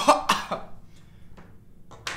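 A young man coughing: several coughs in quick succession at the start, then trailing off. He is choking on a spoonful of dry crushed leaf.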